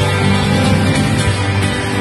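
Band music with guitar playing an instrumental passage, with no singing.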